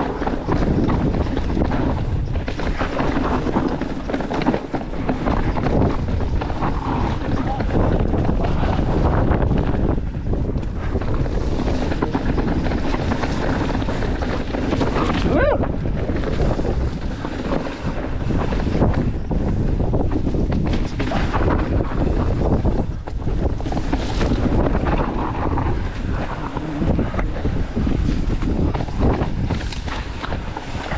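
Wind noise on the camera microphone as a Specialized Kenevo SL mountain bike rolls down a narrow dirt trail, with tyres on dirt and rock and frequent knocks and rattles from the bike over bumps.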